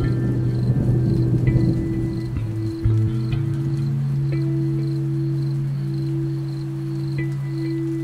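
Slow ambient sleep music: long held low synth-pad tones that shift pitch every few seconds, with a few sparse, high chime-like notes. A faint rain hiss lies underneath.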